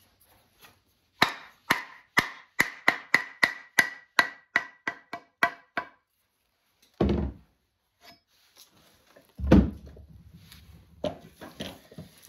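Wooden mallet tapping on a steel axe head fitted on a wooden handle: about fifteen quick blows, roughly three a second, with a faint ringing note between them. Two duller thumps follow a few seconds later.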